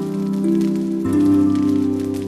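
Instrumental background music: sustained chords that change twice, with a low bass note coming in about halfway.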